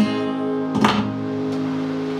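Acoustic guitar strumming a closing chord: one strum at the start, another about a second in, then the chord is left to ring and slowly fade.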